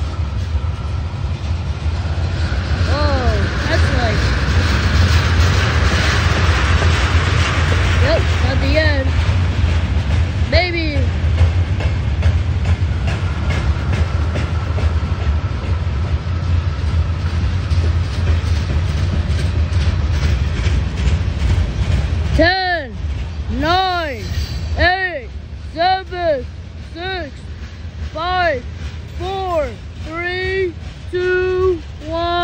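BNSF freight train's covered hopper cars rolling past with a steady low rumble and wheel noise. About two-thirds of the way in the rumble drops, and a voice makes a run of short sung-like notes, one about every half second.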